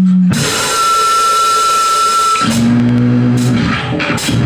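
Live noise-punk band playing loud: distorted electric guitars, bass and drum kit. A steady high tone is held for about two seconds over the noise of the guitars, then low bass and guitar notes are held under drum hits.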